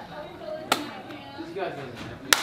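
A single sharp hand slap about a third of the way in, one player striking the other's hands in a reaction slapping game, over low background voices.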